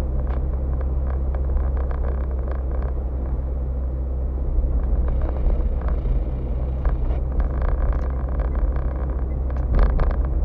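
Car driving, heard inside the cabin: a steady low engine and road drone, with frequent small knocks and rattles and a louder knock near the end.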